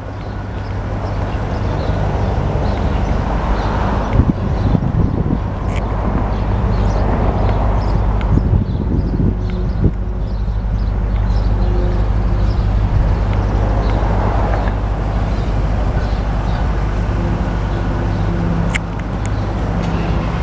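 2004 Land Rover Discovery's V8 engine idling steadily, with a few short clicks along the way.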